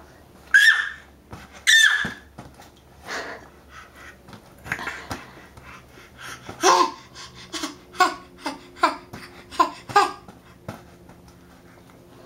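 Baby squealing twice in high-pitched bursts, then a run of short excited laughing vocalisations, with small splashes of bath water between them.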